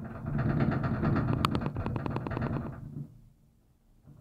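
Gondola cable car's running gear clattering on the haul rope, heard from inside the cabin. A rapid rattling rumble starts suddenly, with a sharp click about a second and a half in, and fades out about three seconds in.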